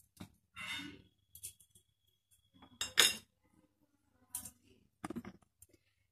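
Stainless steel kitchen utensils clinking and knocking against each other and the counter: a scattering of separate clicks and clinks, the loudest a sharp metallic strike about three seconds in.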